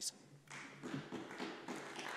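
Faint scattered taps and rustling in a quiet debating chamber.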